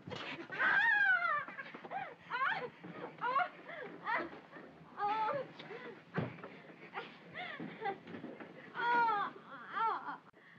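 A woman's repeated high-pitched cries and shrieks during a struggle. Each cry is short and arches up and down in pitch, with the loudest near the start and about nine seconds in.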